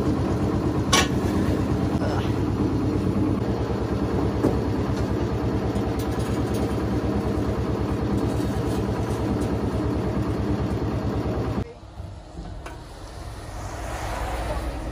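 A nearby engine running steadily with an even, pulsing beat, over a few sharp knocks of bricks being handled. The engine sound stops abruptly near the end, leaving a quieter low rumble.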